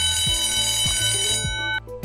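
A loud ringing alarm sound effect that signals time up on a quiz countdown, lasting nearly two seconds and cutting off suddenly, over background music.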